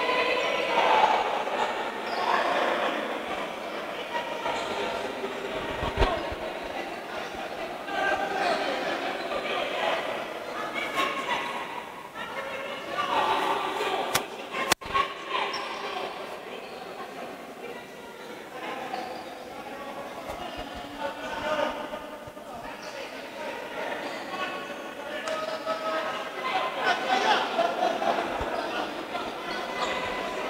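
Indistinct voices of players and people courtside echoing in a basketball gym during a stoppage in play, with a couple of short thumps, about six seconds in and halfway through.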